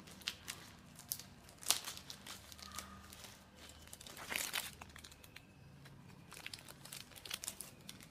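Clear plastic bag crinkling and crackling in the hands as it is handled, in irregular bursts, with a sharp crackle just under two seconds in and a longer rustle just past four seconds.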